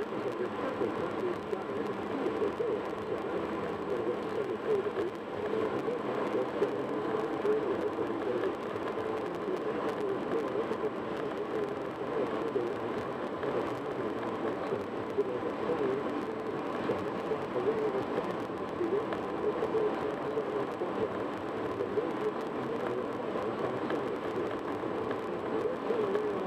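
Steady road and tyre noise of a car cruising at freeway speed, heard from inside the car, with a faint, muffled talk-radio voice underneath.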